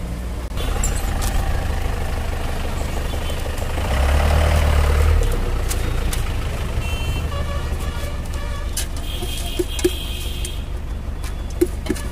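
Road traffic with a steady low rumble, swelling as a vehicle passes close by about four to five seconds in. Light clicks and the rustle of newspaper from the food stall sit over it.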